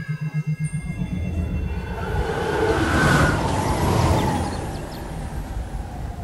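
Film soundtrack: a blast's shockwave sound effect, a rushing rumble that swells to a peak about three seconds in and then fades, over music with a pulsing low note at the start.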